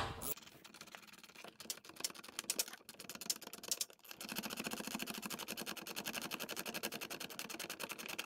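Ratchet clicking as the nut on a hand-operated rivnut setting tool is wound up to compress a rivnut: scattered clicks at first, then a rapid, even run of clicks from about halfway.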